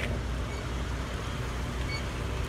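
A sedan driving slowly past close by, a steady low engine and tyre rumble.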